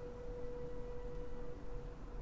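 A single sustained ringing tone of one steady pitch with faint overtones, cutting off near the end, over a low background hiss.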